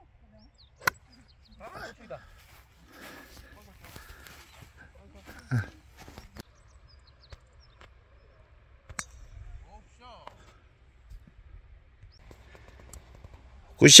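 Golf iron striking the ball on a fairway approach shot: one sharp click about a second in. A second, fainter click comes about nine seconds in, with faint voices between and a loud "good shot!" at the very end.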